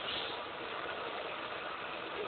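Steady launch noise of Space Shuttle Endeavour just after liftoff, from its solid rocket boosters and three main engines firing. It is heard dull and band-limited through an old TV broadcast recording.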